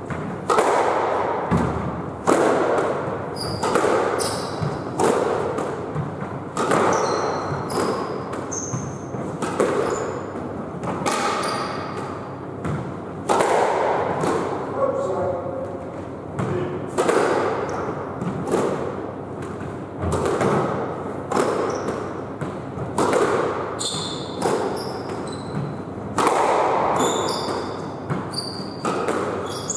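A squash rally in a 2-on-1 boasting drill: the ball is struck by rackets and bangs off the court walls about once a second, each hit echoing in the court. Short high squeaks from court shoes on the wooden floor come between the hits.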